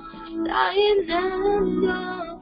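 A worship song sung with acoustic guitar accompaniment: a singing voice over steadily strummed guitar. The loudest sung phrase comes about half a second in.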